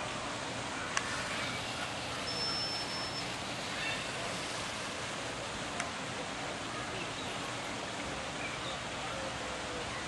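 A trainer's whistle gives one short, high, steady note a little over two seconds in, over a steady outdoor hiss. Two faint clicks are heard, one early and one past the middle.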